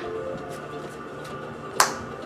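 A single sharp snap of a trading card being handled, near the end, over a steady faint background.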